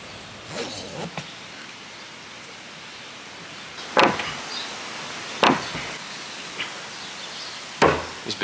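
Foam surfboards being strapped to a roof rack with a cam-buckle strap: a few soft strap and buckle sounds, then three sharp smacks about a second and a half apart. The last smack is a hand slapping the strapped-down boards.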